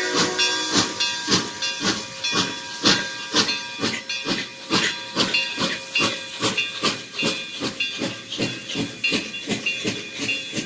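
Exhaust of IAIS QJ 6988, a Chinese QJ-class 2-10-2 steam locomotive, chuffing steadily at about two to three beats a second as it pulls away, the beats growing slightly fainter.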